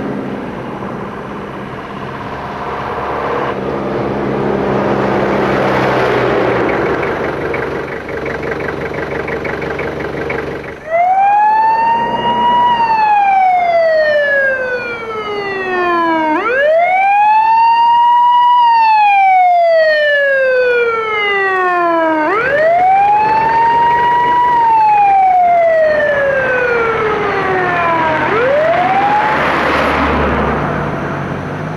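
Background music, then, about eleven seconds in, a siren wailing over it. Each wail rises quickly and then falls slowly, repeating about every six seconds.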